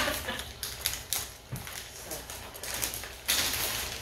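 Light clicks and clatter of small kitchen items being handled, then plastic bags rustling and crinkling steadily for the last second or so.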